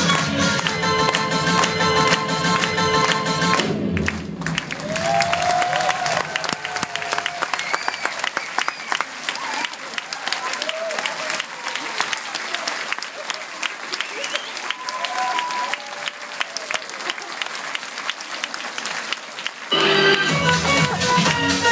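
Upbeat stage-show music that cuts off abruptly about four seconds in, followed by an audience clapping steadily, with voices calling and cheering over the applause.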